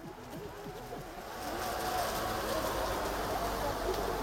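Outdoor ambient noise: a steady low rumble and hiss that grows louder through the first half and then holds, while background music fades out early on.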